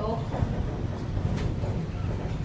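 Steady low rumble inside a moving cable car cabin.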